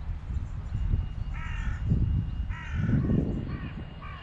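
A crow cawing: two harsh caws about a second and a half and under three seconds in, then two shorter ones near the end, over a low rumble.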